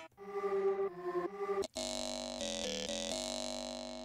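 Arturia Pigments sample engine previewing factory samples as they are stepped through. A short pitched sample with a few changing notes is followed, about halfway in, by a jaw harp sample: a buzzy, twanging drone whose tone shifts in quick steps.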